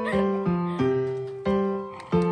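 Background music: a melody of struck notes, a new note or chord about every half second, each starting sharply and fading.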